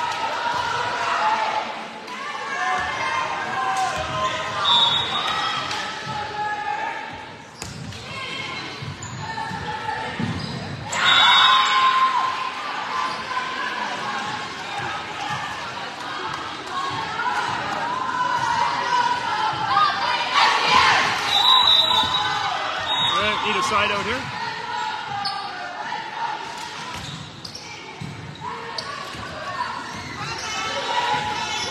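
Voices of players and spectators ringing in a large gymnasium, with a ball bouncing on the hardwood floor now and then and several louder bursts of shouting.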